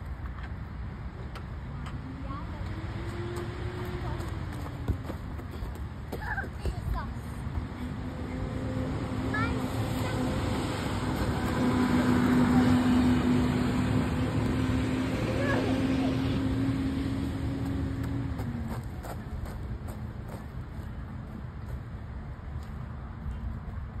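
Heavy work truck's engine running with a steady hum. Its pitch rises and falls briefly a few seconds in, then it holds steady, swelling to its loudest about halfway through and dying away a few seconds before the end.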